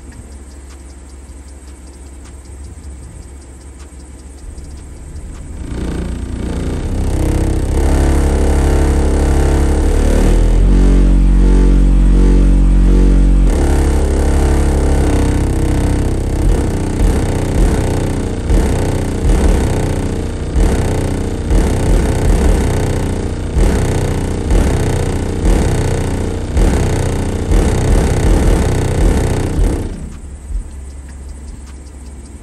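A car-audio subwoofer system in an SUV playing bass-heavy music loudly, heard from outside the closed vehicle. It starts quiet and builds about six seconds in, holds a long deep bass note around the middle, then hits a regular pounding bass beat before cutting off right at the end.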